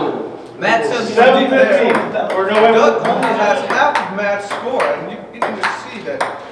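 Table tennis ball clicking sharply off paddle and table several times near the end, over people talking in the room.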